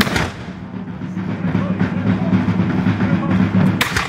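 Two black-powder musket shots, each a sharp crack: one right at the start and one just before the end, over a steady low background rumble.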